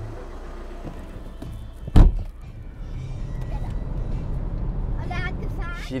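A car door slams shut about two seconds in, followed by the steady low rumble of the car running, heard from inside the cabin.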